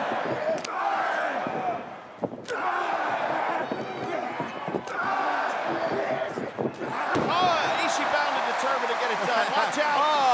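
Pro wrestlers' strikes landing in the ring: several sharp smacks a couple of seconds apart, over a cheering, shouting arena crowd that grows louder in the last few seconds.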